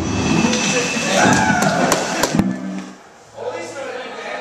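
Live heavy rock band with a drum kit and guitars playing loudly, with a few sharp drum or cymbal hits, that cuts off abruptly about two and a half seconds in. Quieter room sound with voices follows.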